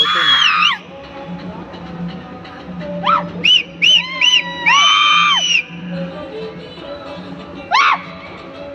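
Several loud, high-pitched shouts or whoops, each rising and falling in pitch: one at the start, a quick run of short ones around three to four seconds in, a longer one about five seconds in, and another near the end, over a steady background of music.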